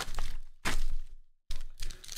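Foil Panini Chronicles football card packs crinkling and rustling in the hands as they are pulled from the box, in three short bursts. The sound drops out completely for a moment just past the middle.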